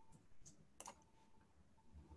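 Near silence, with two faint clicks at a computer in the first second.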